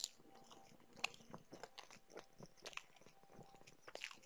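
Faint, scattered crunching and small clicks of a person chewing food close to a headset microphone.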